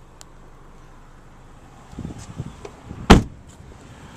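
Handling noise inside a car cabin: quiet at first, then small knocks and rustles, and one loud sharp thump about three seconds in.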